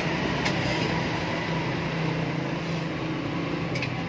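A steady low mechanical hum, with a few light clicks near the start and near the end.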